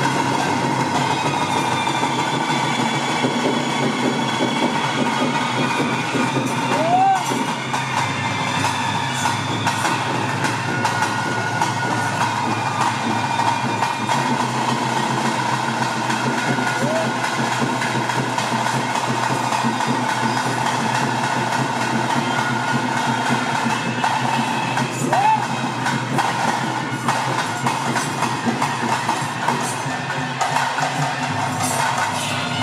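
Traditional bhuta kola ritual music: a dense, steady mix of drums and cymbals under a held high tone, with voices mixed in. Three brief rising notes stand out, about a quarter, halfway and most of the way through.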